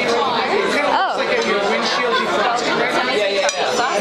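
Several people talking over one another in a restaurant dining room: indistinct chatter with no single clear voice.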